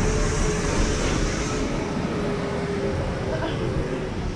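A small electric street vehicle's motor whining steadily, the whine slowly dropping in pitch, over a heavy rumble of wind and handling noise on the microphone.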